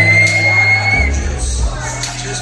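Live music played loud through a hall's sound system, with a deep bass beat and singing into microphones. A high, held cry lasts about a second at the start.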